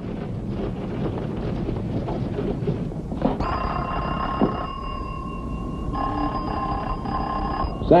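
A telephone ringing twice, starting about three seconds in, over a murmur of office voices. A short click comes during the first ring as the doorknob is tried.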